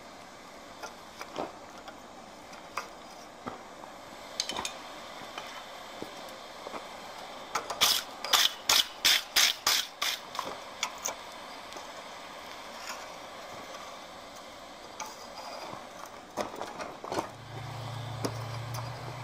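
Sharp metallic clicks and clinks of steel tools against a hot iron bar and a steel bending jig held in a vise, scattered through, with a quick run of about eight loud taps, roughly four a second, near the middle. A low steady hum comes in near the end.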